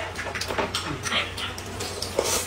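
Close-miked eating sounds: noodles being slurped and chewed, mixed with light clicks of chopsticks and a spoon against a glass cup, in irregular short bursts.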